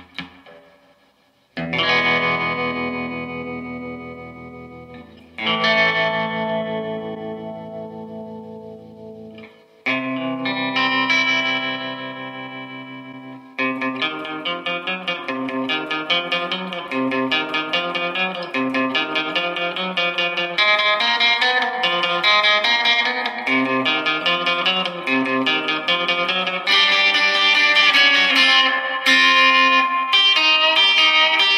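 Gretsch electric guitar played through a Fender Tone Master Deluxe Reverb Blonde Edition amp with a Celestion speaker, on its vibrato channel with reverb added. Three strummed chords are each left to ring and fade. Then, from about halfway through, a steady rhythmic rock-and-roll picking part follows.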